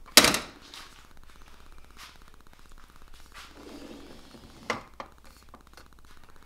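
Aluminium-framed 100 W solar panel on a slide-out tilt bracket being lowered and closed down onto its rails with one sharp, loud clack just after the start. A few lighter clicks and a short rub follow as it is pushed back along the aluminium slider channel.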